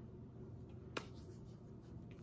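Quiet hand sounds: palms and fingers rubbing together, with one sharp click about a second in and a few fainter ticks.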